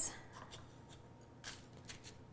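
Faint rustling of parchment paper and light taps as breaded cauliflower florets are set down by hand on a baking tray, with two slightly louder taps in the last half-second.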